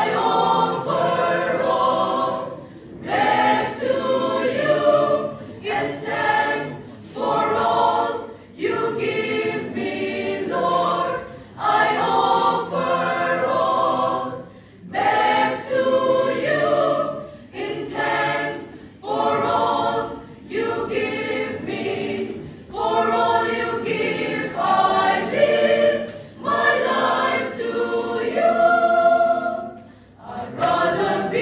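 Mixed choir of men and women singing a sacred song a cappella, in phrases a few seconds long with brief breaks between them.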